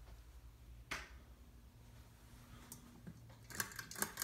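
Hunter Vista ceiling fan with an AirMax motor running on low speed, nearly silent: a faint steady low hum. One sharp click comes about a second in, and a few light clicks near the end.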